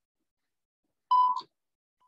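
A single short electronic beep at a steady pitch, about a third of a second long, about a second in: a Morse code tone played from decoding-practice software. It is loud, with a brief rough edge as it ends.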